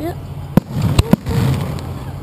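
Aerial fireworks firing at close range: three sharp reports, one about half a second in and two close together about a second in, over a steady low rumble.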